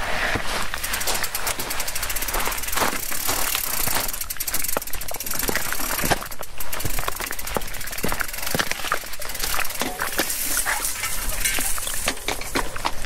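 Footsteps scuffing and crunching on loose rock and gravel while a Scott Spark full-suspension mountain bike is pushed by hand over stones, its frame and parts rattling and knocking irregularly. The rear hub's freewheel ticks quickly as the wheel rolls.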